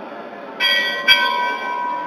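A metal bell struck twice, about half a second apart. The second strike is the louder, and it rings on with a sustained clear tone.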